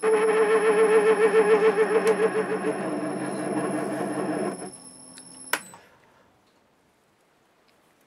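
MN-80 small lathe running while a knurling tool rolls a knurl into a brass nut: a hum that wavers rapidly in pitch. It winds down to a lower tone about four and a half seconds in, and there is a sharp click about a second later.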